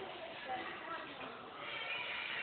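Dull thuds of a gymnast's hands and feet landing on a balance beam during a handspring flight series, one a little louder about half a second in, with voices in the background.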